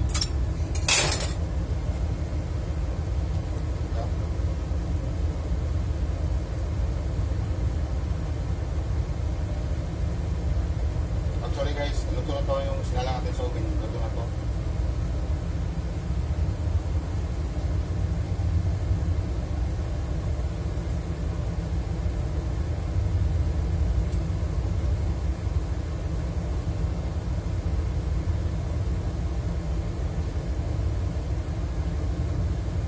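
Steady low machine rumble, with a couple of sharp clicks about a second in and a brief voice around twelve seconds in.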